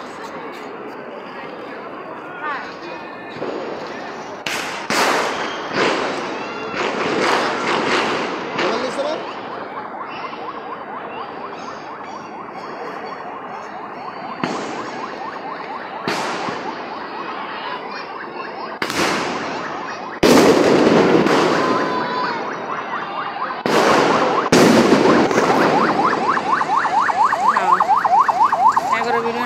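Fireworks and firecrackers going off overhead in a string of separate sharp bangs, some followed by a crackle, over a crowd of voices. A fast warbling electronic alarm starts up near the end.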